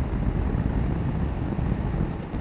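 BMW F850GS's parallel-twin engine running as the motorcycle rides along at about 75 km/h. It comes across as a steady low rumble mixed with wind noise on the microphone.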